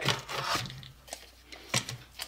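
Steel tape measure blade retracting into its case with a brief zipping rattle, followed near the end by a single sharp click or knock as the tape is set down.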